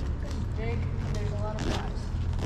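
Rustling and handling of a black nylon shoulder bag as a hand digs inside it for a flashlight, with a few short sharp rustles, over a steady low rumble.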